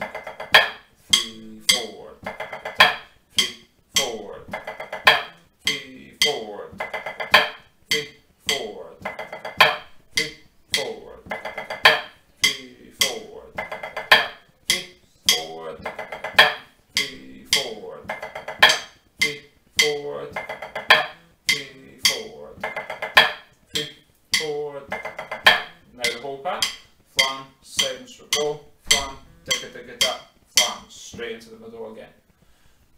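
Drumsticks playing a practice pad: a pipe band 3/4 march pattern of flams, seven-stroke rolls and even taps, in steady repeating phrases of about two seconds.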